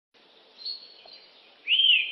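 Bird-like chirping sound effect: a faint high whistle, then near the end a loud chirp that arches up and back down in pitch.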